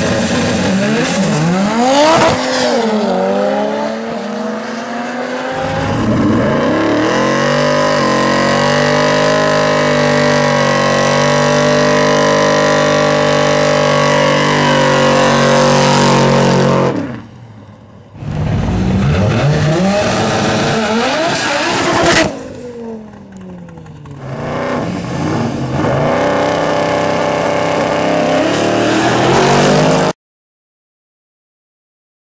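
Car engines revved hard. One engine is held at high revs for about ten seconds while a car's rear tyres spin in a burnout. Engines then rise through the gears as cars accelerate away, with sudden breaks where the sound cuts between runs.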